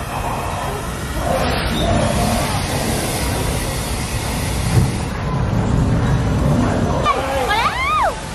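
Special-effects canyon on a theme-park tram ride: steady rumbling, rushing noise with a louder rush about a second and a half in, as a fire effect flares and water begins to gush down the rocks. A person's rising cry comes near the end.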